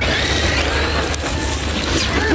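Traxxas X-Maxx electric RC monster truck driving hard on loose gravel, its tyres spraying stones in a steady loud rush with a faint high motor whine.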